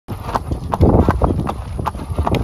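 Hoofbeats of a horse walking on an asphalt path, about three clip-clops a second, with a low rumble underneath.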